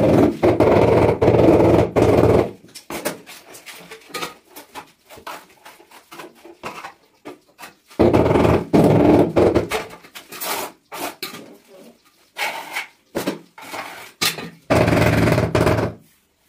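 A mallet rapidly tapping a ceramic floor tile to bed it into fresh mortar. The taps come in three quick rapid runs of about two seconds each, one at the start, one about eight seconds in and one near the end, with scattered lighter knocks in between.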